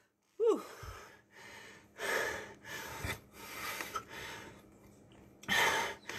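A man breathing hard, winded after an intense bodyweight exercise set: a short voiced sigh about half a second in, then a string of deep, noisy breaths about a second apart.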